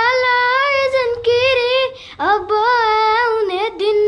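A boy singing unaccompanied in a high voice: two long held phrases with a wavering pitch, the second starting after a brief break about two seconds in.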